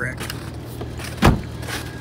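Vehicle engine idling with a steady low hum, with one sharp thump a little over a second in.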